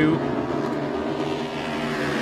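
Engines of a pack of dirt-track racing motorcycles coming off a corner, several engine notes blended into a steady drone.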